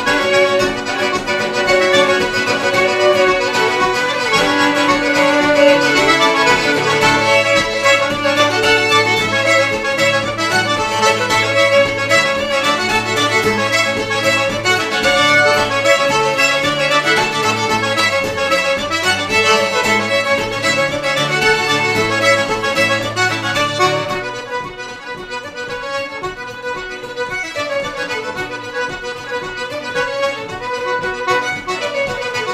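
Traditional Québécois tune played by a diatonic button accordion, a fiddle and an acoustic guitar together. About 24 seconds in, the sound thins out and gets somewhat quieter as the sustained low notes drop away.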